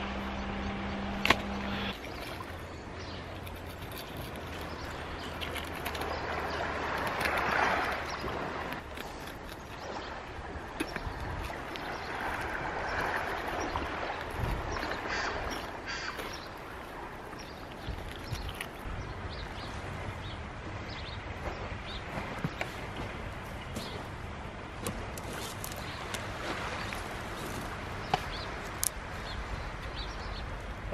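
Surf washing on the shore, swelling twice, with scattered small knocks and clicks.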